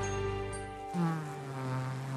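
Honeybee buzzing, a steady drone; about halfway through a stronger buzz sets in and dips slightly in pitch.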